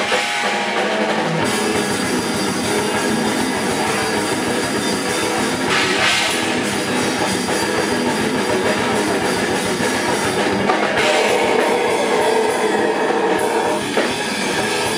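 Live slamming brutal death metal band playing: distorted guitars and a drum kit, loud and dense. The deepest bass drops out for about the first second and a half, then comes back under rapid drumming.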